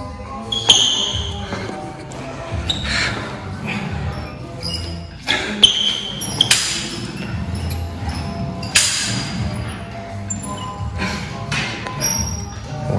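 Music playing in the background, with several sharp metallic clinks and clanks from a cable machine's handles and weight stack as a set of cable flies begins.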